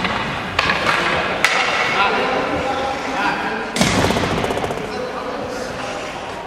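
Ice hockey practice in an indoor rink: three sharp knocks of pucks and sticks, the heaviest nearly four seconds in, each echoing through the hall, with players' voices in the background.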